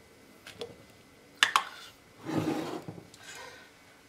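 A tight plastic lid pulled off a glass jar: two sharp clicks as it snaps free, then a short rustling noise.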